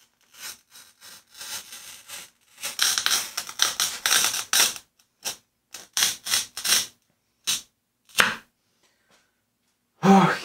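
A cheap hand-held wheel glass cutter scoring a quarter-inch-thick mirror along a clamped straight edge: one long scratching stroke of about four seconds, then several shorter strokes.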